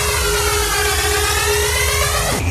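Electronic build-up in a hardstyle DJ mix: a siren-like sweeping noise effect that dips and then rises again, over a held synth tone and a pulsing low bass.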